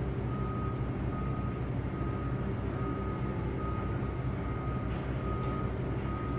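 A steady, evenly pulsing low rumble like an idling engine, with a single high beep repeating a little more than once a second.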